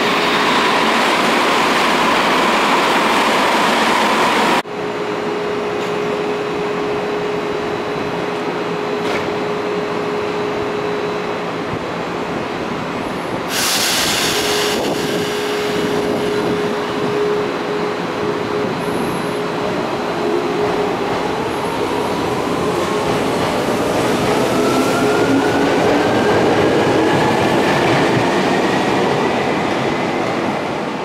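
Electric commuter trains at a station platform. First a train's motor whine falls in pitch as it slows, and then, after a cut, a stopped train hums steadily. A short burst of air hiss comes about halfway through, and over the last ten seconds a train's traction motor whine rises in pitch as it pulls away and gathers speed.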